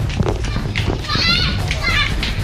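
Young children's voices shouting and shrieking while they play, high-pitched and loudest in the second half, over a steady low hum.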